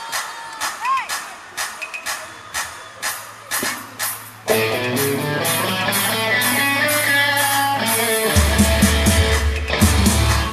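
Live rock band recording: a steady drum beat plays alone for the opening bars, then guitars and keys come in together about four and a half seconds in, and a heavy bass line joins near the end.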